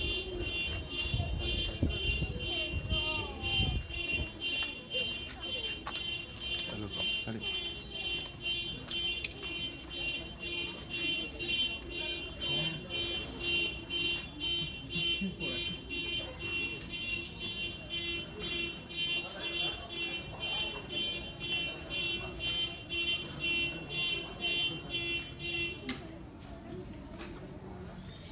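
An electronic alarm beeping rapidly and evenly, about two high-pitched pulses a second, that cuts off suddenly at the end, with faint voices of people around it.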